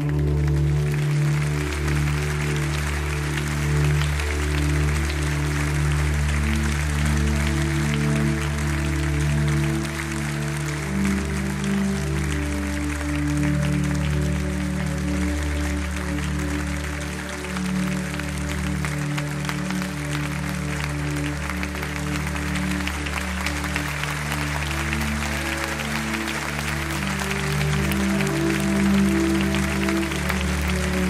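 Live worship music: held chords that change every few seconds, under a steady wash of audience applause.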